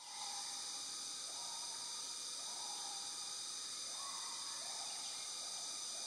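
Steady chorus of forest insects: a continuous high buzz layered in several even bands, fading in at the start and holding level throughout.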